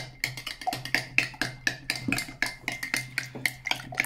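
A metal spoon stirring thick oatmeal in a drinking glass, clinking rapidly against the glass about six times a second.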